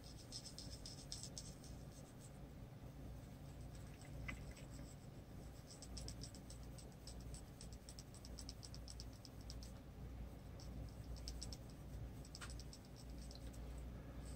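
Prismacolor coloured pencil scratching lightly on paper in runs of quick, short back-and-forth shading strokes, with pauses between the runs, over a low steady hum.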